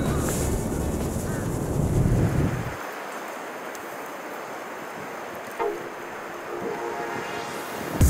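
Strong gusting wind buffeting the microphone, a loud low rumble that cuts off suddenly about three seconds in, leaving only a much quieter hiss.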